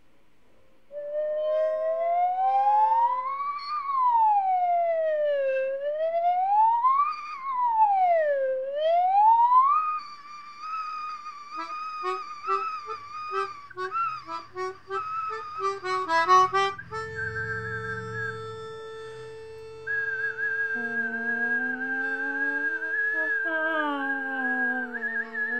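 Slide whistle sweeping up and down in long smooth glides, then a melodica playing short detached notes and settling into a held chord. Over the chord, a higher whistle-like tone wavers.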